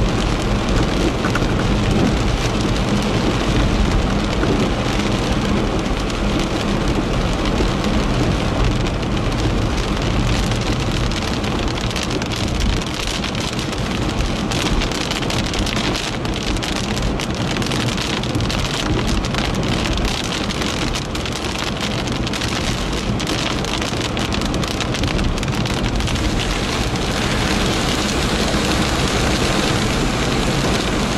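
Heavy rain drumming on a moving car's roof and windscreen, heard from inside the car, with steady road and engine noise underneath.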